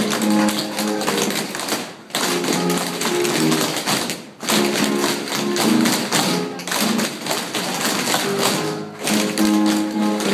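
Tap shoes striking a wooden floor in quick rhythm, danced from a chair, over recorded music. The music and tapping break off briefly about two seconds and again about four seconds in.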